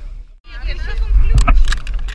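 Speedboat under way: steady engine and wind rumble on the on-board microphone, with indistinct voices. The sound cuts out briefly just after the start, and a few sharp knocks come in the second half.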